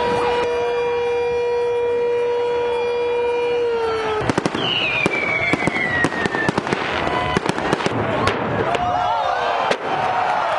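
A long, steady horn note for about four seconds, then fireworks going off: a rapid run of sharp bangs and crackles, with one falling whistle among them, over the voices of a crowd.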